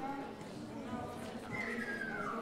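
Indistinct murmur of voices, with a high falling squeal near the end.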